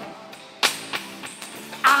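Isolated live vocal-mic track: a sung note fades out, then a single sharp drum hit bleeds into the microphone a little over half a second in, with faint band music behind. A male voice starts singing again near the end.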